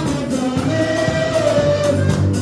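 Live gospel music: several voices singing together over a drum kit and percussion, with one long held note about a second in.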